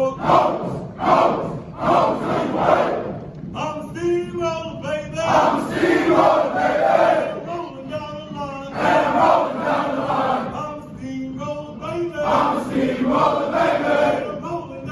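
A large group of soldiers' voices chanting and singing together in unison while marching, shouted lines alternating with sung phrases.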